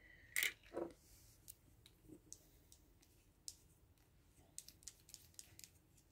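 Faint clicks and light taps of a small gel polish liner bottle and its cap being handled on a wooden table. Two louder knocks come within the first second, then scattered lighter ticks follow.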